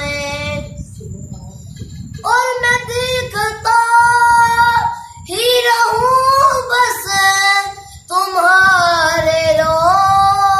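A boy singing a naat, an Urdu devotional poem in praise of the Prophet, unaccompanied, in long held notes with gentle wavering turns. He breaks off briefly twice, once early and once later on.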